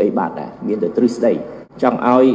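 Speech only: a man's voice reading the news in Khmer, continuously.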